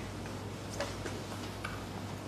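Room tone of a lecture hall during a pause: a steady low hum with a few faint ticks and clicks.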